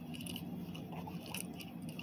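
Faint handling noises as a small diecast toy car is picked up and turned over by hand: light rustling with a few small clicks and ticks.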